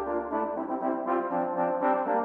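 Computer-rendered brass band music: the tenor horns play a quick figure of short repeated notes over a low note that dies away in the first second.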